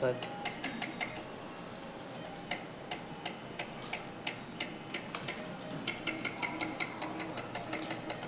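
Irregular light clicks and ticks, several a second, coming in bursts over faint steady room noise.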